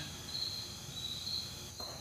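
Quiet pause filled with faint room hiss and a thin, high-pitched steady tone that breaks off and comes back.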